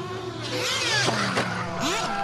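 Nitro RC cars' small glow-fuel two-stroke engines revving hard, their pitch sweeping up and down several times with a rushing noise, from about half a second in.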